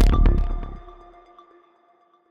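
Electronic outro music ending: a final hit, then the sound dies away over about a second and a half, leaving a few faint held tones fading out.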